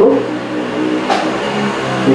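A motor vehicle engine running, its pitch wavering slightly, with a brief click about a second in.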